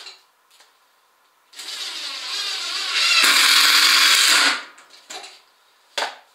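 Cordless drill running into the wooden planking of a boat hull for about three seconds, getting louder partway through, with a few short knocks around it.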